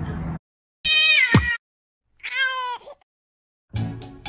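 An animal's two high, pitched cries: the first falls in pitch, the second is held more level.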